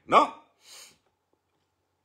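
A man's voice ends on one short syllable that falls in pitch, followed by a brief breath.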